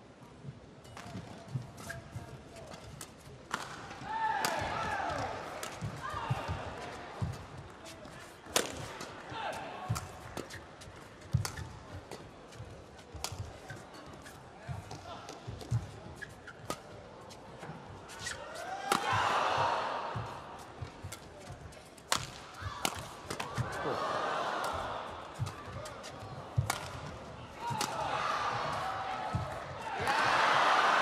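Badminton singles rally: the shuttlecock is struck back and forth by racquets, giving sharp hits at irregular intervals about a second apart. The crowd's voices swell several times during the rally.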